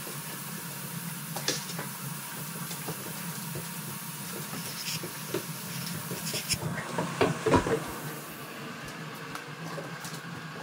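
Two dogs playing on a hardwood floor: scattered clicks and scuffles of paws over a steady hiss. A cluster of louder knocks and rustling comes about seven to eight seconds in.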